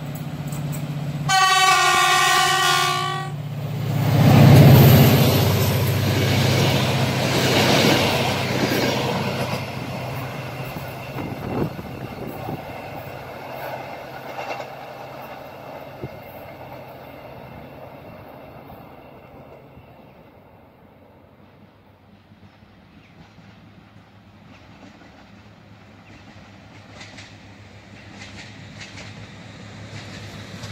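Diesel regional passenger train sounding one horn blast of about two seconds as it approaches, then passing close by with engine and wheel noise at its loudest about four seconds in, fading away as it runs off into the distance.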